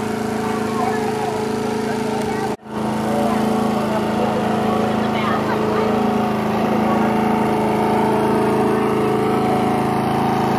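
A small gasoline engine running steadily at a constant pitch. The sound drops out for a moment about two and a half seconds in, then carries on as before.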